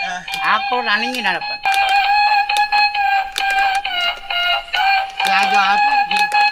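A toy's electronic tune held on long, slightly wavering high notes, with brief bits of a man's voice over it near the start and near the end.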